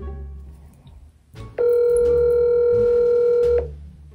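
Telephone ringback tone on an outgoing call over speakerphone: one steady two-second ring starting about a second and a half in, meaning the other line is ringing but not yet answered.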